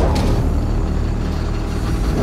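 Heavy steel security shutters sliding down over a house's windows as its lockdown system arms: a loud, steady mechanical rumble with a grinding hiss on top.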